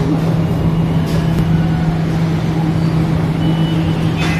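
Loud, steady low hum of running machinery, one constant low tone over a noisy drone, with a couple of faint knocks about a second in.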